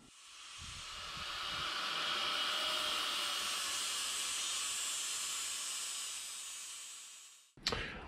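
Handheld angle grinder with a flap disc grinding the inside of a steel emergency-brake shoe, a steady high hiss that swells in over the first couple of seconds and fades away near the end. The shoe is being opened up so the hub's wheel-speed tone ring will clear it.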